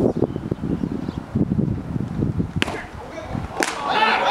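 Baseball bat hitting a pitched ball with a single sharp crack about two and a half seconds in, followed about a second later by a second sharp clack, over players' voices calling across the field.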